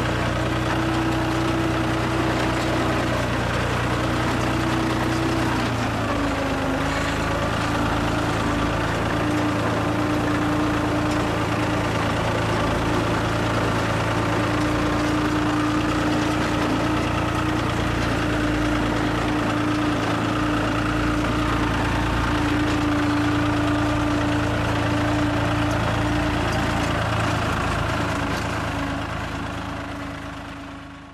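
Fiat 450 DT tractor's three-cylinder diesel engine running steadily under load, pulling a loader wagon as it picks up hay. The engine note dips and settles at a slightly different pitch about six seconds in.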